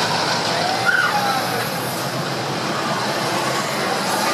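Steady rushing background noise with faint, distant voices, heard from a gondola of a moving Ferris wheel, with a short higher sound about a second in.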